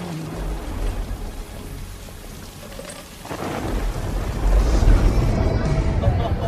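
Rain falling steadily. About halfway through, a loud rolling rumble of thunder builds and holds until the end.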